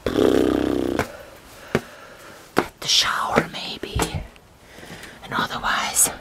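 Close-miked whispering in a small room, broken by a few sharp clicks. A loud buzzing tone fills the first second.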